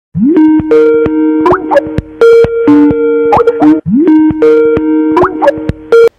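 An electronic call-ringtone jingle made of bubbly plopping notes over held tones. It plays once and starts over about four seconds in, then cuts off suddenly.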